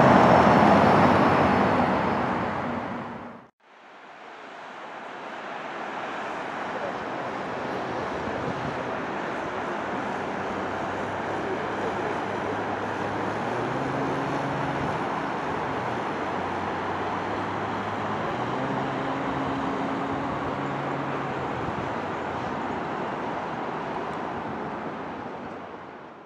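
Steady hum of distant city traffic, with the low drone of vehicle engines swelling twice. In the first few seconds a louder stretch of street sound fades out to a brief gap, and the traffic sound then fades back in.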